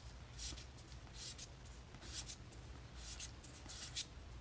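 Magic: The Gathering cards sliding against one another as they are moved one by one through a hand-held stack: a soft swish about once a second, with a small click at the very end.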